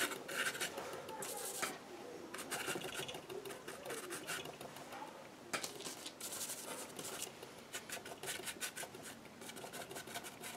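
Paintbrush scrubbing paint onto a gessoed MDF board: a dry, scratchy rasp of quick short strokes, coming in bursts that are busiest at the start and again around the middle.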